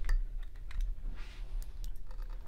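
An eggshell being cracked and pulled apart by hand: a few small, sharp clicks and crackles of the shell.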